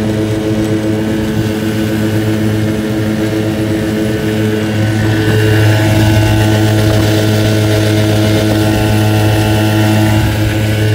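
Modified 5 hp single-cylinder two-stroke Tohatsu outboard running steadily under way, pushing the boat along. The engine note grows a little louder about halfway through.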